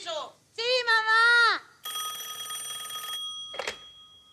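A drawn-out vocal exclamation, then a telephone's bell ringing once for about a second and a half with a fast trill. A sharp clack follows as the handset is lifted, and the bell's ring dies away after it.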